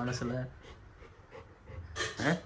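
A voice trails off in the first half-second, then a Labrador retriever pants softly, with faint, irregular breaths.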